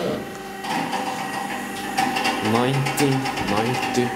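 A steady mechanical hum inside an elevator car, growing stronger about a second in. A person's voice speaks briefly over it near the end.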